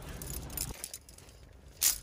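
Low outdoor rumble that drops away under a second in. Near the end comes one brief, bright metallic jangle of climbing hardware (cams and carabiners) being handled.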